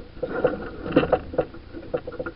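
Irregular knocks and rattles of crew and gear on a racing yacht's foredeck while under sail, over a low rumble of wind and water, loudest about a second in.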